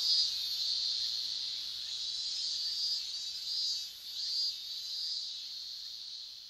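Cicadas buzzing in a steady high-pitched drone that swells and eases in pulses, slowly fading out.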